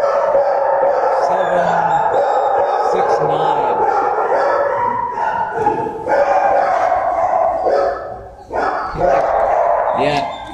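Dogs barking in a shelter kennel, among them a white short-coated dog at the chain-link front of its run, making a loud, nearly unbroken din. There are brief lulls a little past the middle and again near the end.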